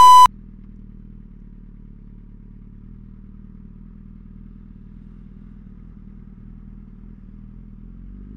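A short, loud test-pattern beep, then a Suzuki B-King's inline-four engine idling steadily and low, breathing through Yoshimura TRC stainless slip-on canisters.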